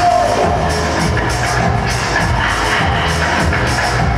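Latin dance music with a steady beat, played for a dancesport heat.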